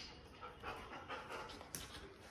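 German Shepherd panting faintly as it jumps and tugs at a toy in a game of tug-of-war, with a short sharp click at the start and another near the end.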